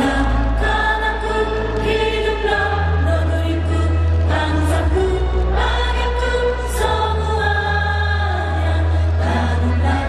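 Women singing through handheld stage microphones over instrumental accompaniment, with a strong bass line that changes note every two or three seconds.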